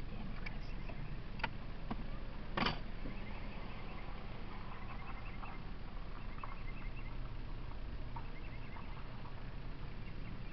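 Steady low hum of a car's engine and road noise inside the cabin while driving slowly, with a few clicks, a short rustle about two and a half seconds in, and faint high chirps in the middle.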